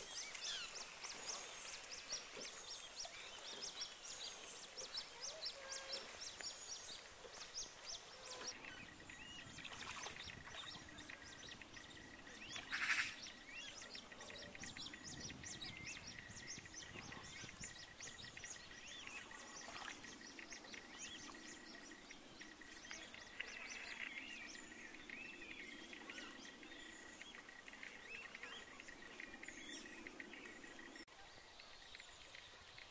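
Eurasian coot chicks peeping around a feeding adult: many short, high-pitched chirps, thickest in the first third, with a single louder call partway through. A faint steady high whine runs underneath from about a third of the way in.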